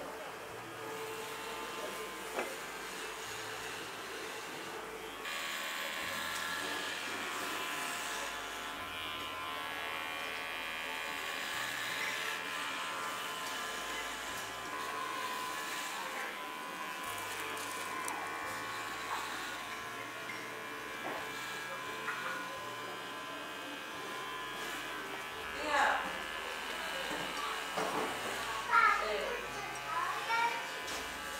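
Electric hair clippers buzzing steadily as they shave a head down to the scalp, with the hum shifting slightly as the blade moves through the hair. A couple of brief voices come in near the end.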